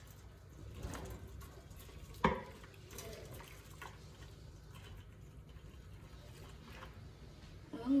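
Hot liquid gelatin (pandan gulaman) pouring from a saucepan into a stainless-steel pan: a faint trickling splash, with one sharp metallic knock about two seconds in.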